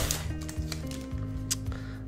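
Soft background music of held notes, with a few faint clicks and crinkles of foil booster-pack wrappers and cards being handled.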